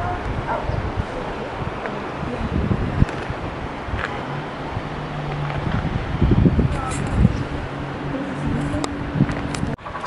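Wind buffeting the camera's microphone outdoors: a rough low rumble with irregular knocks. About halfway through, a faint steady low hum joins in and stops just before the end.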